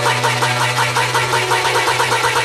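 Progressive house music in a breakdown: a held bass note under a fast, evenly repeating synth pattern, with no kick drum.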